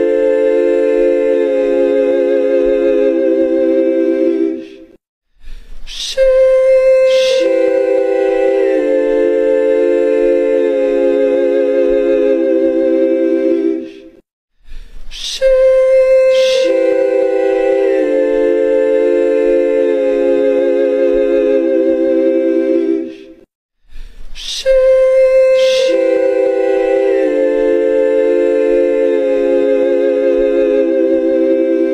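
'Heavenly sheesh' meme sound effect: a sustained a cappella vocal chord sung on 'sheesh', opening with a hissy 'sh' and its notes shifting down step by step. It loops about every nine seconds, with a brief break before each repeat, three times here.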